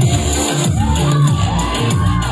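Live pop band playing loudly through a concert PA, an instrumental passage with a heavy bass and drum beat and no singing, with the crowd cheering over it.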